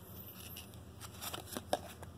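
Trading cards in a stack sliding and flicking against each other as they are handled: soft dry rustles and a few faint clicks, more of them in the second second.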